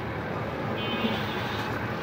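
Steady background noise, a low rumble with hiss, with a faint voice briefly about a second in.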